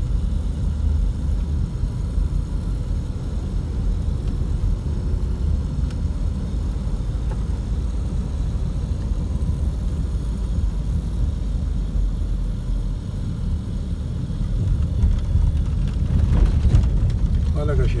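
Steady low rumble of a moving car heard from inside the cabin: engine and tyre noise on the road, growing a little louder in the last few seconds.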